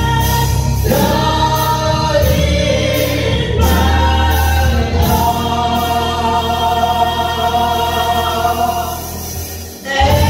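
Small gospel vocal group singing long held notes in harmony into microphones over a heavy, steady bass accompaniment. The sound thins and dips briefly just before the end, then picks up again.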